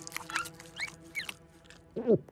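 Cartoon squeaks: about three short, high chirps, each rising in pitch, over a couple of soft clicks.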